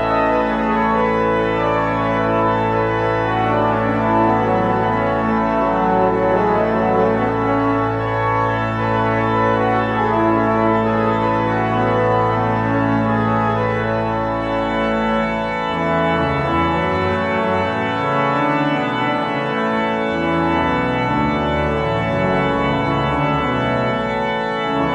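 Church organ playing sustained chords over a deep held pedal note, with upper voices moving above. About two-thirds of the way through the held bass note ends and the low part begins to move from note to note.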